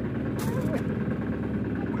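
Fishing boat's engine running steadily, a low even hum, with a brief laugh about half a second in.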